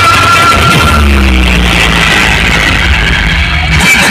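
Loud music played through a large outdoor DJ sound system, with heavy bass. The bass cuts out briefly near the end.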